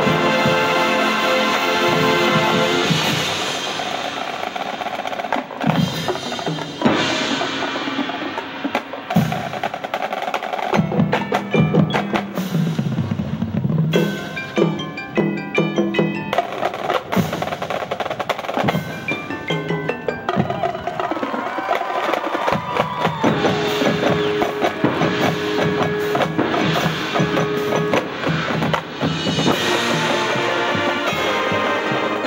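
Marching band playing its field show: held brass chords for the first few seconds, then a percussion-led passage of drum strikes and rolls with the front ensemble's mallet keyboards, including a repeated note in the last few seconds.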